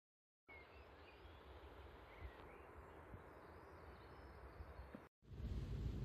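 Faint outdoor background with a low rumble and a few thin bird chirps, after half a second of silence. About five seconds in it cuts to the louder, steady cabin noise of the 2005 Lexus IS250 on the move.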